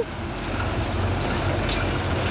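Volvo lorry's diesel engine running as it rolls slowly past close by: a steady low rumble, with two short hisses of air about a second in.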